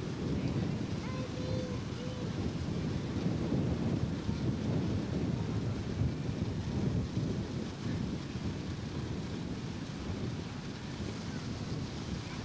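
Wind buffeting the camcorder microphone: a steady, low rumbling noise, with a couple of faint, distant voices about a second in.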